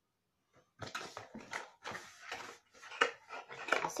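Small cardboard box of glitter glue pens being handled and shaken, a run of irregular rustling and light rattling that starts just under a second in.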